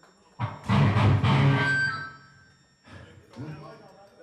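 One loud hit struck on the band's drums and amplified instruments about half a second in, ringing out and fading over about a second and a half. A voice follows near the end.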